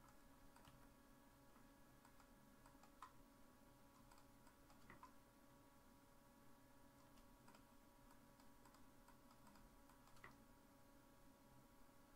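Faint, scattered clicks of a computer keyboard and mouse, a few slightly louder ones about 3, 5 and 10 seconds in, over a steady faint electrical hum.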